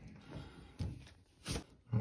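Faint handling sounds as a shower faucet lever handle and hex key are picked up, with one short knock about one and a half seconds in.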